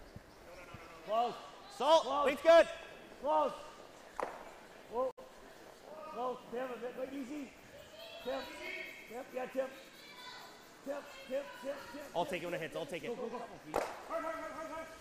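Curlers shouting short, loud sweeping calls on the ice, one after another, while their brooms sweep the stone down the sheet, with a sharp knock near the end.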